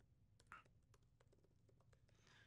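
Faint computer keyboard typing: a run of light key clicks, with one slightly louder click about half a second in.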